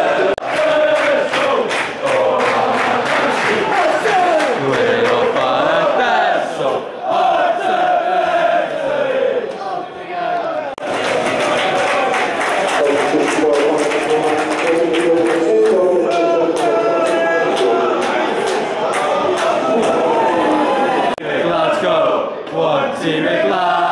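Football supporters in the stand singing a chant together, many voices at once, with stretches of sharp clicks or claps in the first few seconds and again from about 11 to 16 seconds in.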